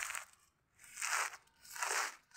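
A hand gripping and turning a soil-filled black plastic grow bag, making crinkling, scraping noises in three or four short bursts.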